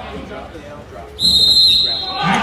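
Referee's whistle: one sharp, steady, high-pitched blast of just under a second, starting past the middle, over low crowd chatter in a gym.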